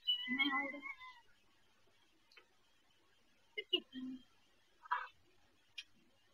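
A kitten's short mew lasting about a second at the start, followed by a few faint clicks and small rustles.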